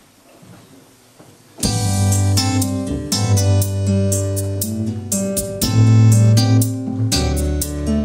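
Portable electronic keyboard beginning to play about a second and a half in: a run of short, sharply struck notes over a held bass line.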